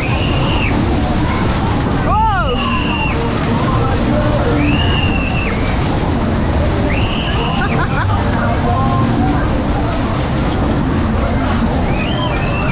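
Wind rush and rumble of Wheatley's Turbo Jet, a Matterhorn-style fairground ride, running at full speed. High-pitched screams and whoops from the riders come several times, a couple of seconds apart, as the cars swing round.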